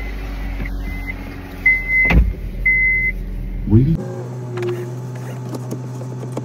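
A car's warning chime beeping about four times, with a single thump about two seconds in. Near the end, the engine starts and settles into a steady idle.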